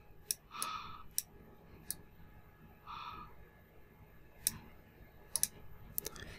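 Computer mouse clicking: about half a dozen sharp single clicks at irregular intervals, with two faint short hisses about a second and three seconds in.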